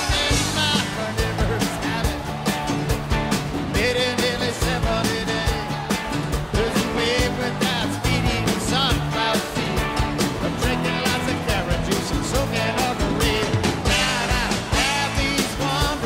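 A live rock band playing an upbeat song with a steady drum beat.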